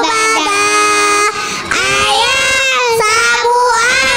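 A group of young girls singing together in unison into microphones, with held, gliding notes and a short dip in loudness about a third of the way through.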